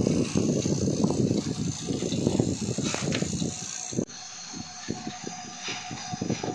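Refrigeration vacuum pump running with a loud, rough rattle, evacuating a refrigerator's sealed system before an R600a charge. About four seconds in the sound drops abruptly to a quieter level with a few light clicks.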